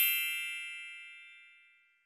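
A single bell-like metallic ding, struck just before and ringing out, fading away over about a second and a half.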